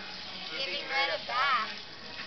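Water spraying steadily from a garden hose nozzle onto a dog's wet coat and the concrete beneath, with soft voices over it.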